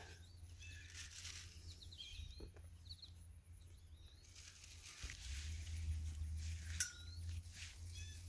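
Faint outdoor ambience: a few short bird chirps, one gliding chirp near the end, over a low steady rumble, with scattered light clicks and rustles.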